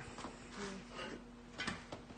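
Quiet room with faint, brief bits of voice and a soft click near the end.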